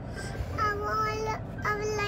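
A young girl's sing-song voice: a long held note of about a second, then a second held note near the end, over a faint low hum from inside the car.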